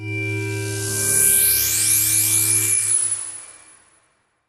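Electronic logo sting: a held synthesizer chord over a low hum, with a shimmering high sweep on top. It starts suddenly, swells about a second in and fades out near the end.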